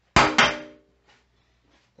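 Two sharp metallic clangs about a quarter second apart, from metal kitchenware being knocked or set down, with a short ring that fades quickly.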